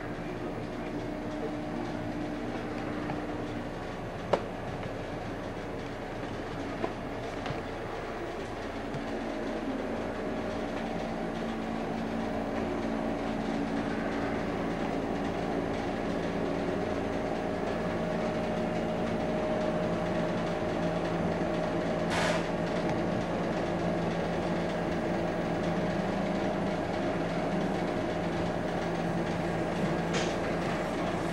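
Steady mechanical hum with several held tones that shift in pitch now and then, growing a little louder, with a couple of light clicks early on and a brief hiss about 22 seconds in.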